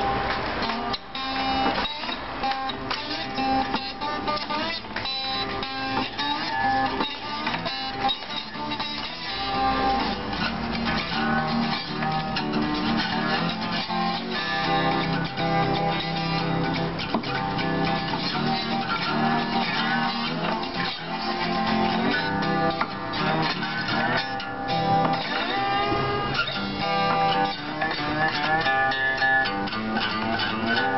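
Acoustic guitar played solo, a steady run of plucked notes and strummed chords.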